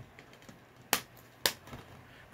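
Two sharp plastic clicks about half a second apart: a DVD case being snapped shut.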